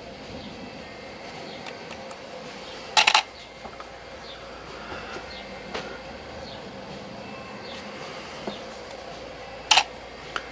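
Faint room hum with soft brush strokes on watercolour paper. Two brief, louder scratchy strokes come about three seconds in and again near the end.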